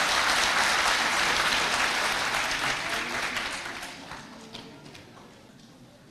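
Audience applauding in a hall, loud at first, then dying away over about five seconds.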